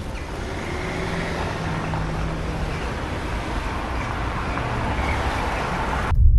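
City traffic noise: a steady wash of road and engine sound with faint hums of passing vehicles, slowly growing louder.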